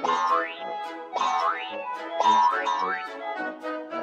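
Light children's background music with three quick rising cartoon sound effects, about a second apart, each sliding upward in pitch.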